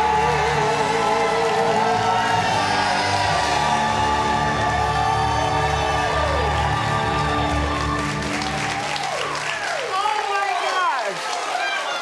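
The final held note and chord of a song with backing music, fading out about ten seconds in. From about eight seconds in, a studio audience applauds, cheers and whoops.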